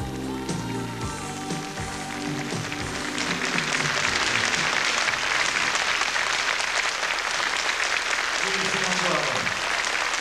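The instrumental ending of a pop ballad, then a studio audience applauding, the clapping building up about three seconds in and continuing loudly; a voice comes in near the end.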